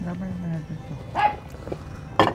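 A low hummed "mmm" from a person's voice, then one short loud yelp about a second in.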